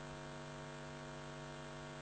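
Steady electrical mains hum from the microphone's sound system, an unchanging low hum with a series of evenly spaced higher tones.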